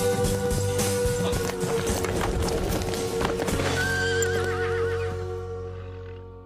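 Horse hoofbeats over held music chords, then a horse whinnies with a wavering pitch about four seconds in as the music fades out.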